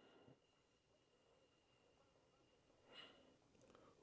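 Near silence: room tone, with one very faint short sound about three seconds in.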